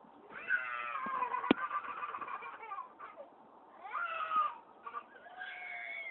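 A toddler's high-pitched, wordless whining cries: one long wavering cry, then two shorter ones, with a sharp click about a second and a half in.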